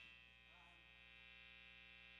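Near silence: a faint, steady electrical hum and buzz, typical of a stage's amplifiers and PA idling.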